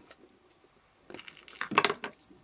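Paper rosebuds rustling and crinkling as they are handled in the fingers, in two short bursts in the second half, the second the louder.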